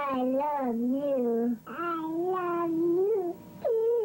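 High-pitched, sped-up 'chipmunk' voices vocalising in drawn-out, sing-song phrases whose pitch glides up and down, with brief pauses about a second and a half in and again near the end.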